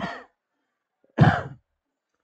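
A man's short sigh, one breathy exhale into a close headset microphone, a little over a second in.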